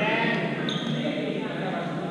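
Echoing voices of players across a large gymnasium during several badminton games, with a short high squeak about two-thirds of a second in.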